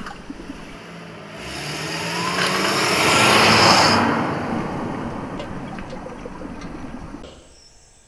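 A car driving past on the street, its engine and tyre noise building to a peak about three and a half seconds in, then fading away.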